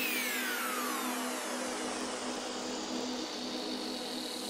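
Electronic dance track in a beatless break: a wash of hiss with several pitch glides falling from high to low, a riser-style sweep effect, over a held low tone, with the bass and drums dropped out.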